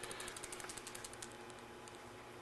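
Faint, rapid light ticking and flapping, about ten a second, as an instant-camera photo print is shaken quickly in the hand; it thins out after the first second.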